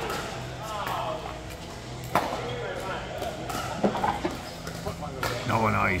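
Pickleball paddles hitting the plastic ball in a rally, heard as a few sharp pops, the two loudest about two and about four seconds in.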